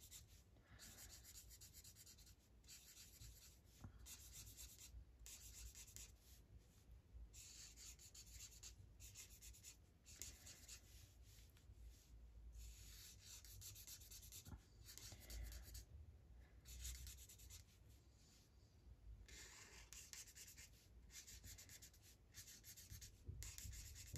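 Marker nib drawing short strokes on tracing paper: faint, quick scratchy strokes in runs with brief pauses between them.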